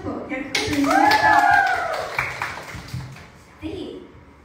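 A small group clapping, starting suddenly about half a second in and dying away over about two seconds, with a high excited voice calling out over it.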